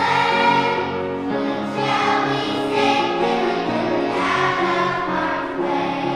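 Children's choir singing a song with musical accompaniment, the voices muffled by face masks.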